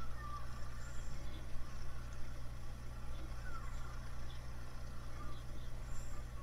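Steady low rumble of outdoor background noise, with only faint scattered sounds above it.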